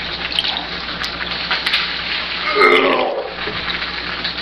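A person vomiting: a steady stream of liquid gushing from the mouth and splashing onto a table, with a gurgling, retching voice about two and a half seconds in.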